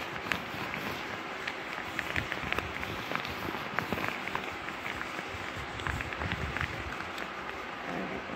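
Cloth garment handled and rubbed right against the phone's microphone: continuous rustling with many small scattered clicks and a few soft low bumps.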